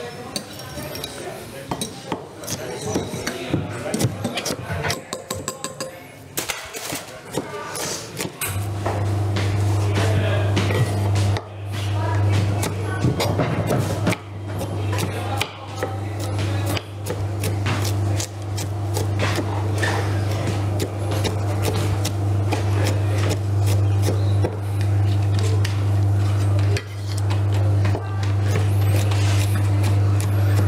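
Knife chopping on a wooden cutting board and a fork beating in a bowl, a run of quick taps and clicks. About a third of the way in, a steady low hum starts and runs under the chopping.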